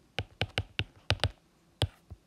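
A quick, irregular run of about seven sharp, hard taps or clicks, with the loudest one near the end.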